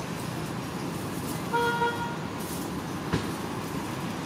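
Steady outdoor background rumble, with a brief steady pitched tone lasting under half a second about one and a half seconds in, and a single sharp click about three seconds in.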